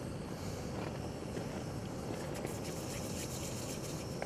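Steady, quiet outdoor ambience: an even low rumble and hiss with a few faint ticks, and nothing standing out.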